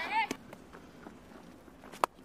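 Faint outdoor cricket-ground ambience after a man's single spoken word, with a sharp knock about a quarter of a second in and another right at the end.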